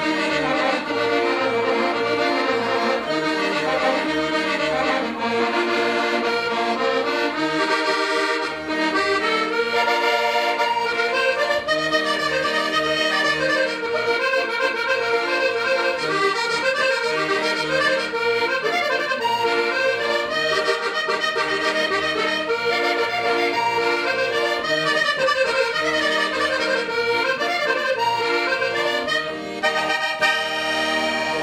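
Traditional music on accordion: a continuous melody of many moving notes over regular, evenly paced bass notes.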